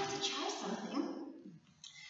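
A woman's voice making short vocal sounds that the recogniser did not catch as words, tailing off about one and a half seconds in.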